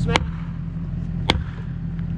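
Two sharp blows struck on a felling wedge driven into the backcut of a fir, the first just after the start and the second about a second later, each with a short ring. A skid steer's diesel engine idles steadily underneath.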